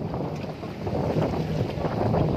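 Wind buffeting the microphone on a boat out on open water: a steady low noise with no clear engine note.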